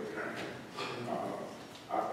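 Indistinct talking, with a voice that rises higher about a second in.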